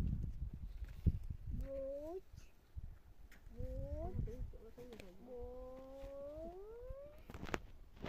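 A cat meowing three times, each call drawn out and rising in pitch, the last the longest at about two seconds. A sharp knock sounds shortly before the end.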